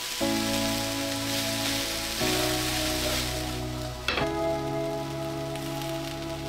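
Sliced red onions and peppers sizzling steadily in a hot griddle pan, under soft background music with held chords.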